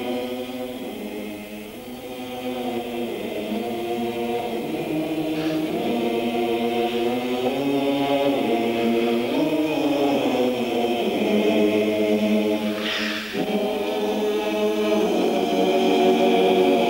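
A choir singing a slow song in long held notes, beginning suddenly and gradually growing louder.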